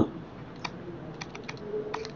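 A few faint, sharp clicks from computer input: one about two-thirds of a second in, then a quick scatter of clicks in the second half, as a pen tool is picked up to write on the screen.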